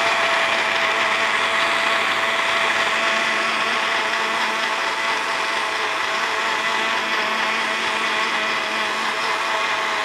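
Countertop electric blender running steadily, grinding tiger nuts and ginger with a little water into a milky pulp.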